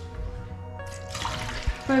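Water poured from a plastic container into a stainless steel sink, a splashing rush lasting about a second in the middle, over background music with sustained notes.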